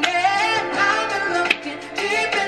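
Live soul performance playing back: a woman singing with a wide vibrato over instrumental accompaniment, with a sharp click about a second and a half in.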